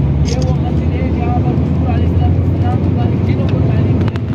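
Moving vehicle's engine and road noise: a loud, steady low rumble, with faint voices in the background.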